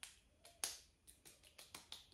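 Hands patting toner into facial skin: a quick run of light pats, about a dozen in two seconds, the loudest a little over half a second in.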